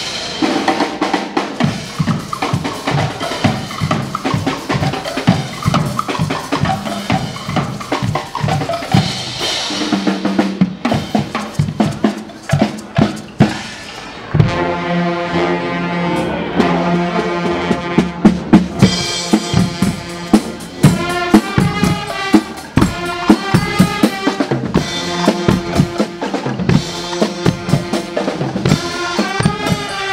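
A Guggenmusik carnival band marching and playing. Bass drums and snare drums beat a steady rhythm through the first half, and from about halfway the brass and saxophones come in loudly with a tune over the drums.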